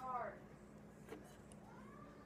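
A cat meowing faintly: a short, falling meow at the very start and a fainter, drawn-out rise-and-fall meow near the end. A steady low hum runs underneath.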